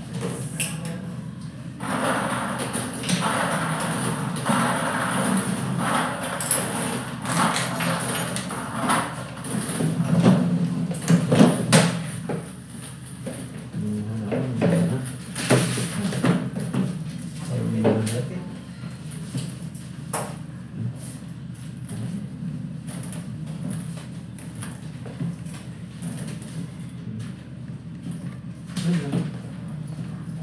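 Indistinct background voices and room noise, with scattered knocks and clicks.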